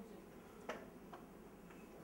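Near-silent room tone with a few faint, short clicks, the sharpest about two-thirds of a second in.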